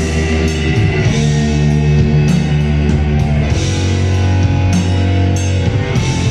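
A live heavy rock band playing loud: electric guitars and a tapped touch guitar holding low sustained notes over a drum kit, with cymbal crashes at a steady pulse.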